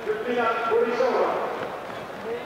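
Indistinct speech for about a second and a half, over the background noise of an athletics stadium.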